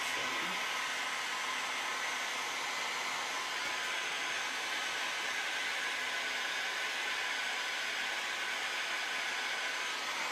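Electric heat gun running steadily while drying paint: a constant blowing hiss with a faint steady whine in it.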